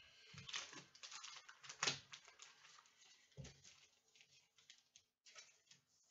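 Faint rustling and small clicks of a trading card being handled and slid into a clear plastic sleeve, with a sharper click about two seconds in.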